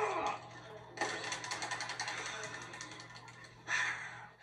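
Rapid typing clatter on a computer keyboard, a fast run of clicking keystrokes heard through a TV speaker.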